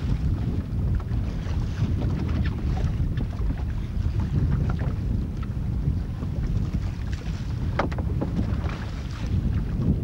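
Wind buffeting the microphone on open water, a steady low rumble, with scattered light knocks and splashes from the boat and net; one sharper knock comes about three-quarters of the way through.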